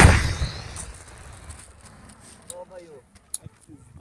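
The blast of an anti-tank launcher shot, either an RPG or an SPG-9 recoilless gun, dying away over the first second and a half as its echo rolls off. Faint voices and a few small clicks follow.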